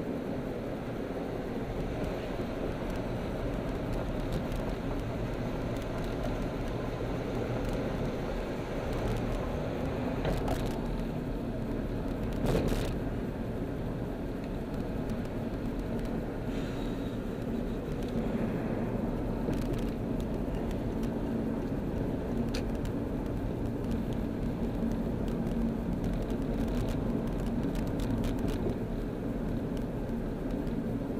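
Steady engine and tyre noise heard inside a moving car's cabin, with a low hum and a few brief knocks, the loudest about twelve seconds in.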